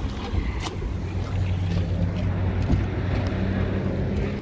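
A vehicle engine idling with a steady low hum, with a few faint clicks over it.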